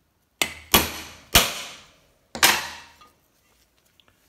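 Ball-peen hammer striking a metal bushing driver four times, each blow ringing briefly, driving the old bushing out of a Turbo 400 transmission's front pump.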